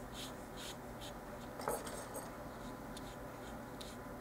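Small paintbrush stroking red paint onto a paper miniature baking pan: a quick, irregular run of faint scratchy brush strokes, with a soft tap about halfway through.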